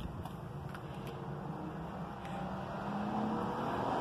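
Low, steady background rumble with a faint hum that grows slightly louder in the second half, with a few faint clicks.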